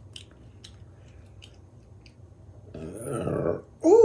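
A woman's loud, deep burp lasting about a second near the end, which she blames on the root beer she has been drinking. Before it, a few faint clicks of chewing.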